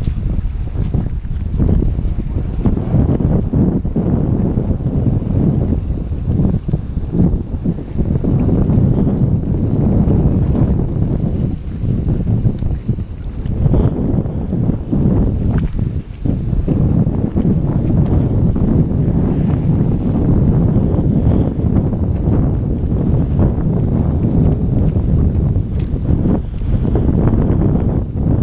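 Wind buffeting the microphone: a loud, gusty low rumble that rises and falls in waves.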